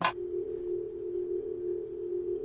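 A sharp hit, then a steady ringing tone held on two close pitches: a chime-like musical sting in a drama's score.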